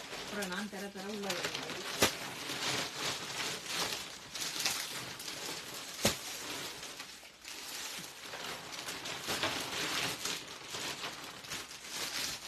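Plastic saree packaging rustling and crinkling as the packets are handled, with two sharp taps, about two and six seconds in.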